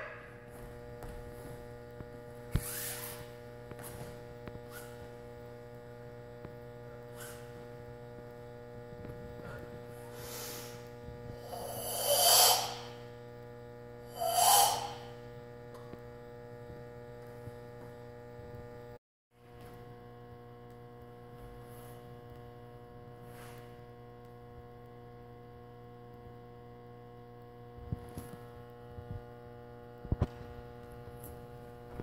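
Steady electrical mains hum, broken by a karate practitioner's sharp, forceful breaths with her strikes in a kata: a faint puff about three seconds in, then two loud, noisy exhalations around twelve and fourteen seconds in. The sound cuts out briefly a little past halfway.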